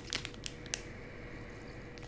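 A few faint clicks and crinkles from the clear plastic wrapper of a wax melt bar being handled, over low room tone with a faint steady hum.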